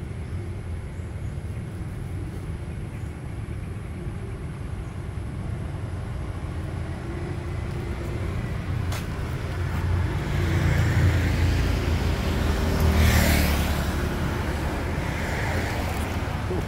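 Road traffic with a steady low rumble. A vehicle passes close, louder from about ten seconds in and loudest around thirteen seconds.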